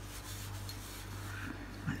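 Faint rubbing and handling noises from hands moving at the work surface, over a steady low hum.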